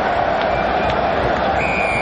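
Stadium crowd noise from a rugby crowd, with a short, steady referee's whistle blast near the end, signalling a penalty at the ruck.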